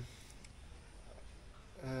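A pause in a man's hesitant talk: only faint, steady low background noise, ending in a drawn-out 'um' near the end.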